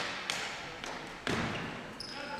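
Ball hockey play on a gym floor: a few sharp clacks of sticks and ball, then a louder thud about a second and a quarter in, echoing around the hall.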